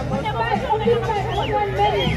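A crowd of people talking and calling out over one another, with music playing underneath.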